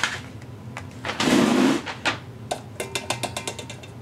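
A cardboard shipping box being slid across a wooden workbench: a scraping rush about a second in, then a run of quick light clicks and taps as things are handled on the bench.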